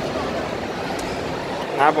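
Steady background noise of a shopping mall interior, an even hum and hiss with a faint click about a second in.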